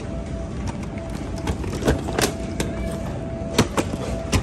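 Airport baggage carousel running with a low rumble and a faint steady thin tone. Several sharp knocks come as an aluminium hard-shell suitcase rides the belt and is lifted off it, the loudest about halfway through and just before the end.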